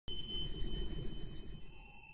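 Electronic logo-intro sound effect: a steady high-pitched tone over a rough, rumbling low layer, cutting off abruptly at the end.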